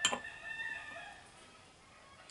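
A sharp click at the start, then a faint animal call of about a second with a wavering pitch, fading well before the end.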